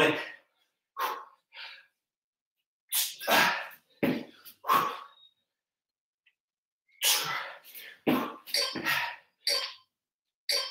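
A man breathing hard through a hard interval exercise, puffing out a series of short, forceful breaths. There is a pause of about two seconds in the middle, then a quicker run of breaths near the end.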